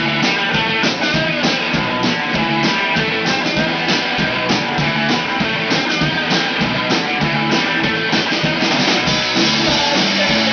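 Live punk rock band playing: electric guitars and a drum kit with a steady drum beat.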